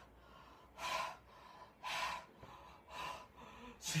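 A man panting heavily, four deep gasping breaths about one a second, out of breath from the exertion of flapping his arms.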